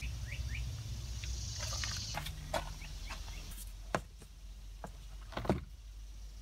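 Faint outdoor background: a steady low rumble with two short rising chirps near the start and a few scattered light clicks.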